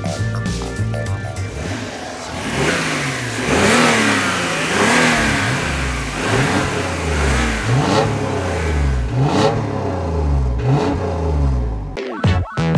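Renault Laguna's 3.0-litre 24-valve V6 revved repeatedly, each rev rising and falling in pitch, over background music.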